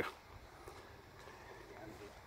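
Faint outdoor background noise with a few faint light ticks, in a gap between speech.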